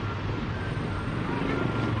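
Street traffic: a vehicle engine running with a steady low hum over general road noise.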